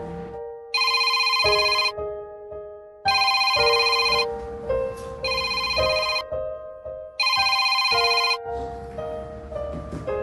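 Smartphone ringing with an incoming call: a bright, trilling ringtone in four bursts of about a second each, over background music.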